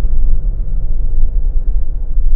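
Steady low rumble of a car in motion, its engine and tyre noise heard from inside the cabin.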